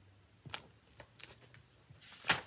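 A few faint rustles and taps of a hardcover picture book being handled and lowered, over a faint low room hum.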